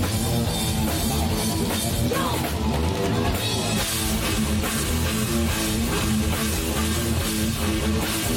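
Heavy metal played live by a band: electric guitar over a drum kit, playing steadily.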